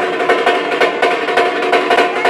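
Music with fast drumming, many strokes a second, over steady held tones.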